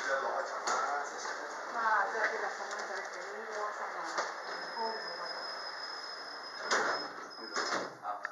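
People's voices talking indistinctly, with a faint high steady whine through the second half and two sharp knocks near the end.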